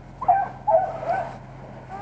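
Beagle hounds baying: two drawn-out, wavering bays, a short one and then a longer one about half a second later, the voice of the dogs on a rabbit's trail.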